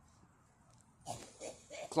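Near silence, then from about a second in a few short breathy exhales and mouth noises from a man exhaling smoke after a drag on a cigarette.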